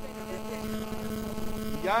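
Steady electrical hum made of several constant tones stacked one above another, running under the recording; a man's voice comes in near the end.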